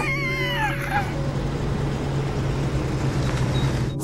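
A cat-like yowl with wavering pitch, ending about a second in, over a steady low hum.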